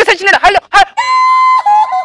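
A few spoken syllables, then about a second in a shrill, steady high-pitched note that is held unbroken to the end.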